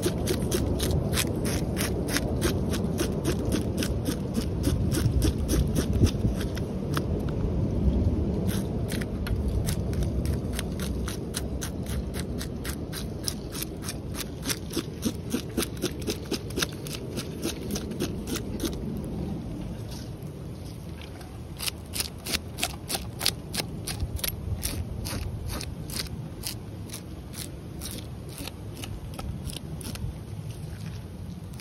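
Hunting knife scraping the large scales off a red drum, in quick repeated strokes, each a short rasp.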